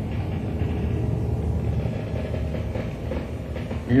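Low, steady rumble with a faint held tone above it, a soundtrack bed under archival mine pictures.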